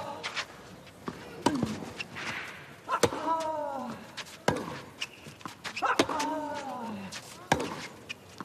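Tennis rally on clay: racket strikes on the ball about every second and a half, six in all. Several of them come with a player's short grunt that falls in pitch.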